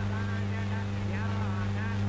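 Steady low electrical hum from an old film soundtrack, with faint voices over it.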